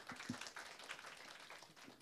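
Faint, scattered hand-clapping from a small audience, thinning out toward the end.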